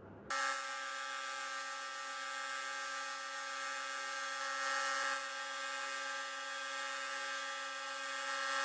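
Electric belt grinder running with a steady hum and whine while its abrasive belt grinds the end of an old steel file, with a steady hiss of metal on the belt. The sound starts suddenly just after the beginning.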